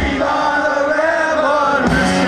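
Many voices chanting one line together in unison while the punk band's bass and drums drop out. The full band, with drums and electric guitars, comes back in just before the end.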